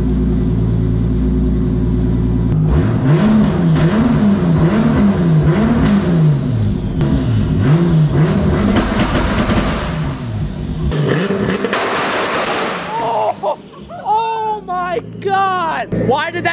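Turbocharged 2JZ-GTE VVTi inline-six in a drift car idling, then, about three seconds in, revved against a two-step launch limiter being tuned. The engine note rises and falls about once a second with a string of pops and cracks from the exhaust. The deep engine sound falls away about eleven seconds in.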